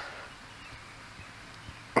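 Quiet outdoor background: a faint, even hiss with no distinct sound in it.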